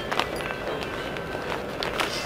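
Clear plastic garment packs with zippered edges being handled and lifted, giving light crinkles and a few short clicks over shop background noise.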